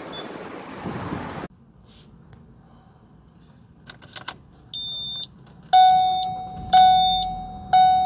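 A car's warning chime dinging about once a second, each ding sharp and then fading, preceded by a few clicks and one short higher beep. Before that comes steady road noise inside the car's cabin, which cuts off abruptly.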